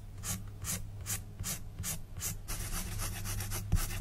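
Colored pencil scratching across sketchbook paper in quick, even back-and-forth shading strokes, about four or five a second, fading in the second half, with a single soft knock near the end.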